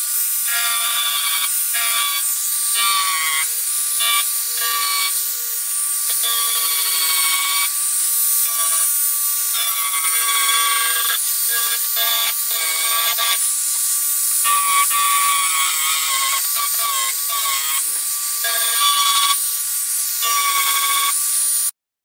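Dremel 4000 rotary tool running at high speed with a small sanding bit. It gives a steady high whine that wavers slightly in pitch and loudness as the bit is worked along the rough edges of carved grooves in a wooden plaque.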